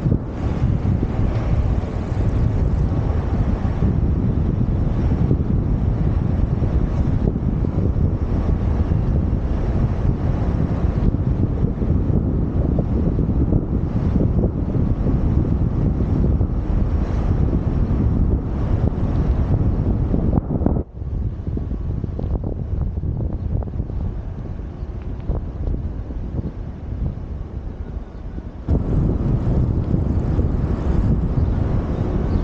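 Wind buffeting the microphone of a helmet-mounted camera on a moving bicycle, a loud steady low rumble. It drops off suddenly about two-thirds of the way through, stays lower for several seconds, then comes back near the end.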